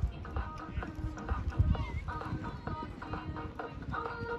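Hooves of a cantering show jumper thudding on a sand arena, the loudest thud about one and a half seconds in, over steady background music from a loudspeaker.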